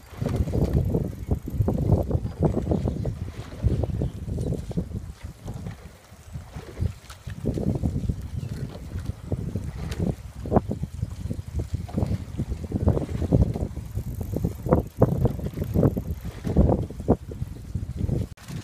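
Wind buffeting the microphone: an uneven low rumble that swells and drops, with a few brief knocks in the second half.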